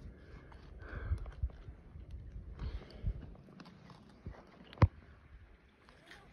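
Climbing rope being handled and wrapped through an aluminium carabiner against a tree trunk: soft rustling and light knocks, with one sharp click about five seconds in.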